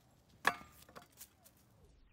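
A single sharp knock about half a second in, with a short ringing tail, followed by a couple of faint clicks.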